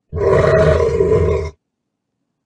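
A bear's roar, a sound effect lasting about a second and a half that stops abruptly.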